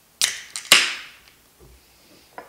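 Aluminium beer can being cracked open: a click of the pull tab, then a louder pop with a hiss of escaping carbonation that fades away within about half a second.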